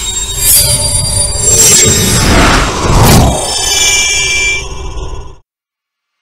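Logo-intro sound design: swooshing sweeps and impacts layered with bright ringing tones over a low rumble, cutting off suddenly about five seconds in.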